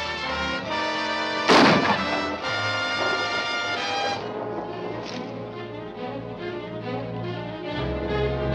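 Dramatic orchestral film score with brass, sustained chords that shift a few times. One loud bang cuts through the music about one and a half seconds in.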